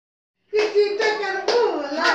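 A high-pitched voice starting about half a second in, with a couple of sharp claps about a second apart.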